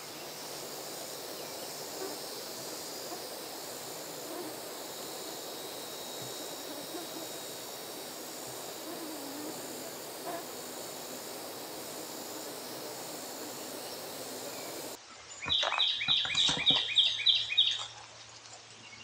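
Outdoor woodland ambience with a steady high insect drone. After an abrupt change near the end comes a loud run of about ten quick, high repeated calls from an animal, close by.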